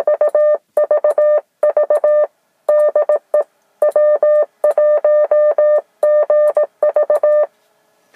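Morse code test signal heard as the Yaesu FT-857D transceiver's CW sidetone: a steady mid-pitched beep keyed in short and long elements, with a few brief pauses between runs. It is sent as a test transmission through the tuned eight-foot whip antenna to check its SWR match.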